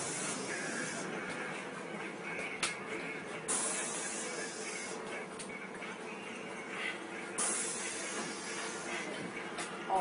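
Steady running noise inside a city bus, broken by bursts of hiss that start suddenly and last a second or two each, about halfway through and again near the end.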